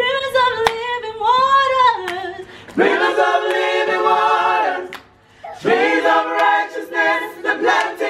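Gospel singers rehearsing a cappella, with no instruments, in sung phrases and a brief break about five seconds in.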